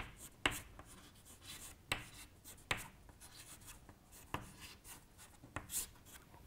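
Chalk writing on a chalkboard: faint, irregular short taps and scrapes as a word is written, with a quick cluster of strokes near the end.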